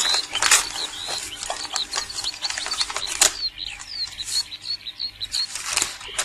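Paper rustling and crackling as a letter is unfolded and handled, with small birds chirping quickly and repeatedly in the background.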